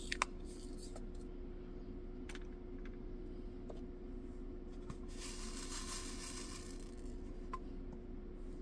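Faint ticks of a drill pen pressing resin diamond drills onto a diamond-painting canvas, with a soft rustling scrape about five seconds in, over a steady low hum.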